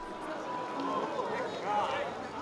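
Outdoor background sound with indistinct voices of people talking some way off.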